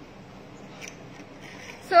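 Low background hiss with a few faint clicks, then a woman starts speaking near the end.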